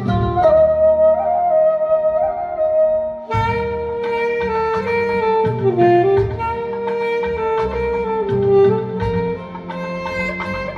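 Saxophone playing a slow song melody over a recorded backing accompaniment. A long held note carries the first three seconds, then after a brief break the melody moves on with fuller backing beneath it.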